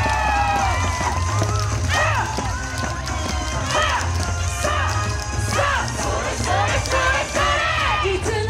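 Yosakoi dance music with a steady low beat, under a string of loud rising-and-falling shouts and whoops, about one a second, from the dancers and crowd.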